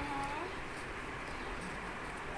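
A person's voice holds a pitched note that rises and stops about half a second in, then only steady background hiss.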